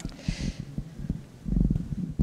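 Handling noise from a handheld microphone being raised: uneven low thumps and rumble, with a short hiss near the start and a heavier low thump about three-quarters of the way through.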